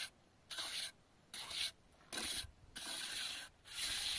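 Hand trowel scraping and smoothing wet plaster, in five short strokes with brief pauses between them.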